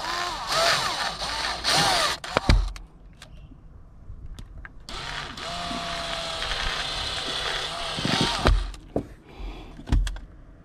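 DeWalt 20V brushless cordless drill boring holes into the plastic dash tray of a pickup: two runs of a few seconds each, the motor pitch rising and falling with the trigger, each ending in a sharp knock.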